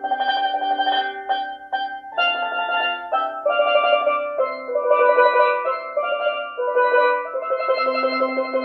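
A single steel pan played with two sticks: a melody of ringing notes, many held as fast rolls, moving to a new pitch about every half second to a second.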